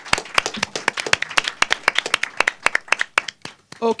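Audience applause: many hands clapping unevenly, dying away near the end.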